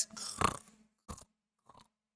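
A man imitating a snore: one short, breathy rasp that fades within about half a second, followed by two faint clicks.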